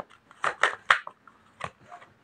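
Tarot cards being handled as the next card is drawn from the deck: a handful of short, sharp card snaps and clicks.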